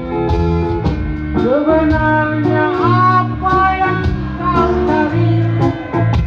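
Live rock band music: electric guitars and bass over a drum kit, with a lead melody that slides up in pitch about one and a half seconds in and bends again a little later.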